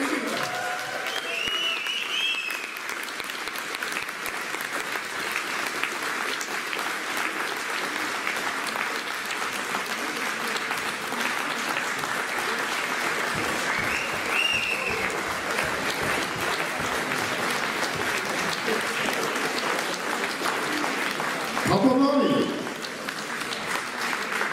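Audience applauding steadily after a live band finishes, with a short high whistle about two seconds in and another about midway. A man's voice comes over the microphone near the end.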